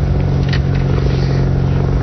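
Steady engine drone of motor vehicles with the race, a constant low hum over road noise.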